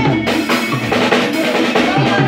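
A small live band playing: a drum kit keeps a steady beat of kick, snare and cymbal hits under acoustic and electric guitars.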